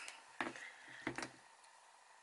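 A few faint clicks of metal jewellery pliers being set down and picked up on a tabletop, the first about half a second in and a second pair just after a second in.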